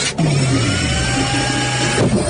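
A loud, sustained electronic tone in the dance routine's music mix: a low note that slides down shortly after it starts and then holds steady, with a thin higher tone above it.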